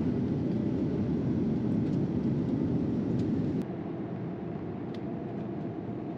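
Steady rushing cabin noise of a Boeing 787-9 airliner in cruise: airflow and engine sound, mostly low, with a few faint ticks. The level steps down slightly a little over halfway through.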